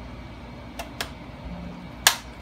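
Two small, sharp plastic clicks a fraction of a second apart as an ear pad's plastic mounting ring is lined up and pressed onto a gaming headset's earcup.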